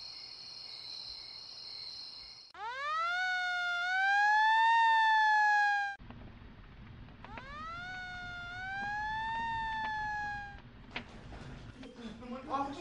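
Siren sound effect in a radio drama: after a few seconds of a steady high-pitched alarm tone, the siren winds up twice, the first wail loud and the second softer. It raises the alarm for a fire caused by a short circuit.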